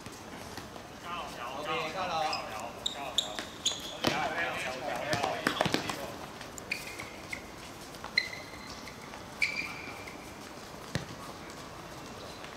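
Players' voices calling out during a seven-a-side football game, mostly in the first half, with a few sharp thuds of the ball being kicked. Several short high-pitched squeaks come later on.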